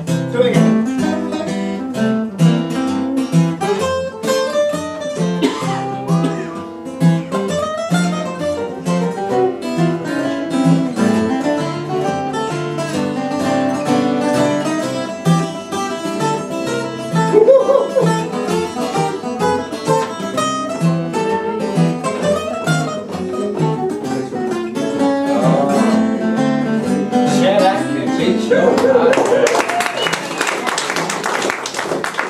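Three acoustic guitars playing an instrumental passage of a country-style cowboy song, with picked notes over strummed chords at a steady beat.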